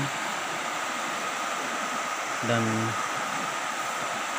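A river in flood: fast, muddy floodwater rushing steadily, still rising.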